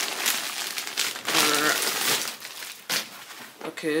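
Crinkly packaging rustling and crumpling as it is pulled off a sleeping bag in its nylon stuff sack. It eases off after about three seconds.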